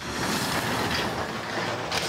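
Metal roll-up storage unit door being rolled open: a loud, continuous rattle of its corrugated slats that starts suddenly and dies away near the end as the door reaches the top.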